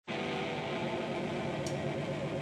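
Electric guitar holding a chord that rings steadily through its amplifier, with a slight waver in pitch.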